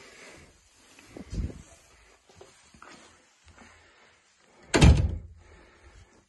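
An interior door being shut, with a loud sudden thud nearly five seconds in, after a softer thump about a second and a half in.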